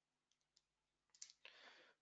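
Near silence with a few faint sharp clicks, and a soft faint hiss shortly before the end.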